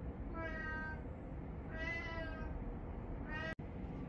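A domestic cat meowing three times, each a drawn-out call; the third is cut off short.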